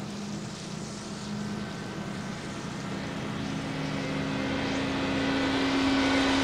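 A steady engine drone with a held hum, growing gradually louder throughout.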